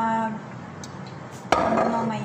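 A woman's voice holding a long, level filler sound at the start. About one and a half seconds in there is a sudden sharp click, followed by more of her voice.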